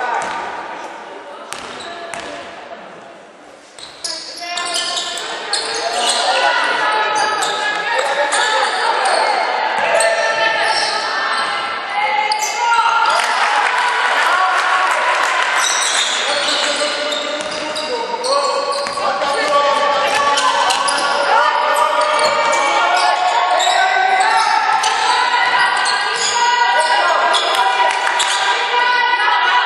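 Basketball game sound in a large hall: the ball bouncing on the wooden court amid players and bench calling out, the voices indistinct. It is quieter for the first few seconds, then busier and louder from about four seconds in as play goes on.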